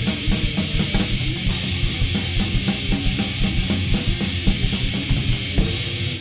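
Hardcore punk band recording playing loud and fast: pounding drum kit with bass drum and snare under distorted guitar.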